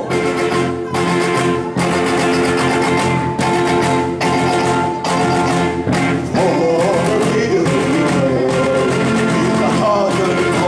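Live band music: a violin and a man singing into a microphone over a steady beat, with a long held note in the middle and wavering melody lines in the second half.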